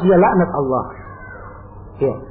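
A man's voice drawing out a wavering vocal sound for about a second, with no clear words, then only faint background hum.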